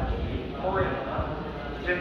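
A man speaking over a station public-address system, echoing on the platform, over a steady low rumble.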